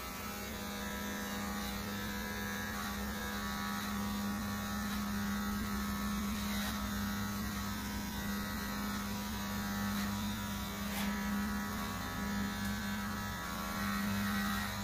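Electric hair clippers running with a steady buzz while cutting hair.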